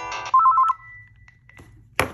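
Panasonic KX-TGC222 cordless handset previewing its Melody 10 ringer tone through its speaker: a melody that stops shortly in, then a loud, rapid two-note trill, followed by a faint thin beep. A sharp knock near the end.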